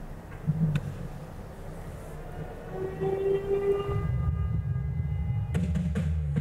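Cinematic sound effects from a music video's intro: a low rumble that grows louder about four seconds in, under held high tones, with a sharp crack near the end.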